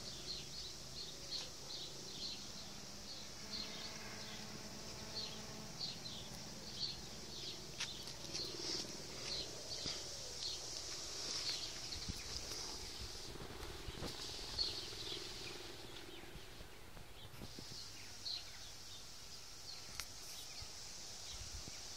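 Birds chirping outdoors in short, quick, repeated calls, a few a second, over a faint steady high hiss.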